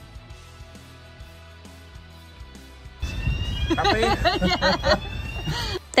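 Quiet background music, then about three seconds in a low vehicle engine rumble starts under it and runs until just before the end.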